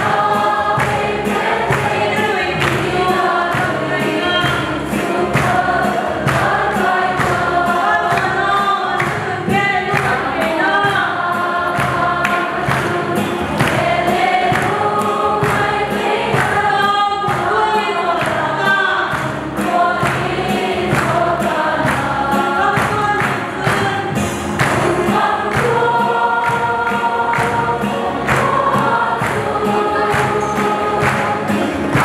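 Women's choir singing a gospel song together, their voices held in long sung lines over a steady beat.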